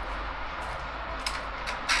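Steady background noise from railway construction work, with a few light clicks in the second half.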